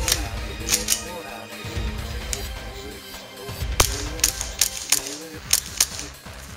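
Gas blowback airsoft pistol's slide cycling: a series of sharp, irregular clacks, a pair near the start and several more in the second half, over background music.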